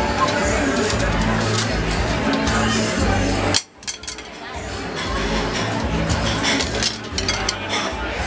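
Recorded music from the venue's sound system, with a steady bass line, under the chatter of a waiting crowd. The sound drops out sharply for about half a second roughly halfway through, then returns.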